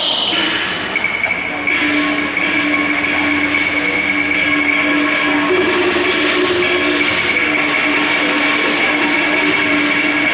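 Cantonese opera stage ensemble playing loudly and without a break: gongs and cymbals clashing continuously under long held high notes. The held low note steps up briefly about halfway through and drops back.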